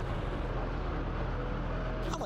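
Title-sting sound effect: a low, steady rumble, with its higher hiss dropping away about half a second in.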